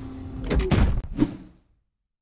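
Sound effect for an animated channel logo: a steady hum over a hiss, then a few sharp thuds about halfway through, dying away to nothing about a second and a half in.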